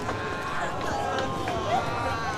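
Indistinct voices with no clear words, over steady background noise.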